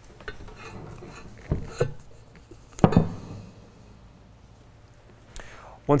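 Steel parts of a welded hydraulic cylinder clinking and knocking as the threaded gland end and rod are handled, a few sharp knocks, the loudest about three seconds in.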